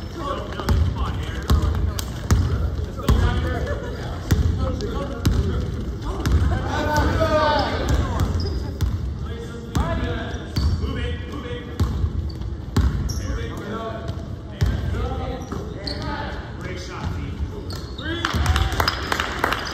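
A basketball bouncing repeatedly on a hardwood gym floor as it is dribbled, with indistinct shouting from players mixed in.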